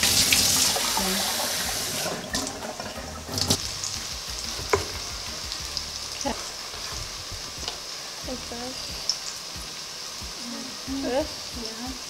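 Tap water running onto tomatoes in a bowl in a stainless-steel sink, cutting off about two seconds in. A chef's knife then strikes a wooden cutting board a few times as the tomatoes are sliced, over the steady sizzle of onions frying in oil.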